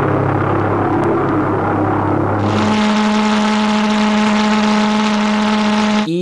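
V-1 flying bomb's Argus pulsejet buzzing steadily and loudly in flight. It starts as a low drone, then about halfway through changes abruptly to a higher-pitched buzz with more hiss.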